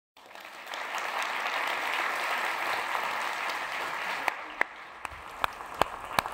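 Audience applause that swells within the first second, holds steady, and dies down about four seconds in.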